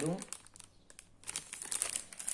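Plastic ready-meal pouch crinkling as it is handled, a run of light crackles that get busier in the second half.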